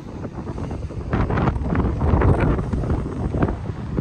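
Strong wind buffeting the microphone, a rough, gusty rumble that grows louder about a second in.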